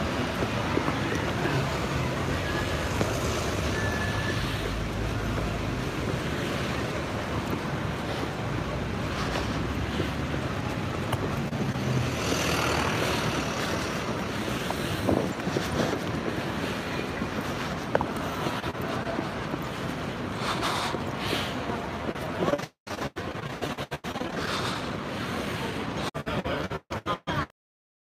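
Street ambience through a phone microphone: a steady wash of traffic and distant voices with some wind on the mic, and a low engine hum in the first few seconds. The sound cuts out completely in several short dropouts over the last five seconds.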